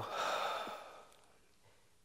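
A man's long, audible exhale into a headset microphone, fading out over about a second and a half.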